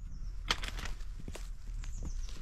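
Soft scuffs and crunches of movement over grass and dry leaf litter, with a few sharper crunches about half a second and a second and a half in.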